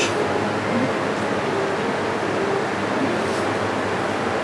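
Steady hum and rush of a cold wine cellar's air conditioning and ventilation.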